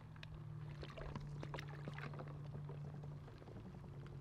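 Water sloshing and broken skim ice clinking and crackling in scattered little ticks as a person wades through a shallow, partly iced-over pond, over a low steady hum.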